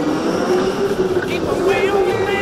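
Go-kart running at speed on an indoor track, a steady motor tone that rises a little as it accelerates and then holds. Brief high wavering squeals come in the second half.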